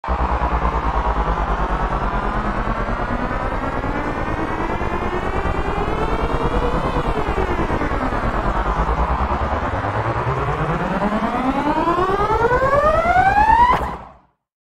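Trap-style riser sound effect: several pitched tones sliding upward, some dipping back down midway while others keep climbing, over a steady low pulsing rumble. Near the end they sweep up steeply and grow louder to a peak, then cut off abruptly.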